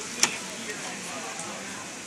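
Steady hiss of rain falling on a wet street, with faint voices in the background. A single sharp click comes about a quarter second in.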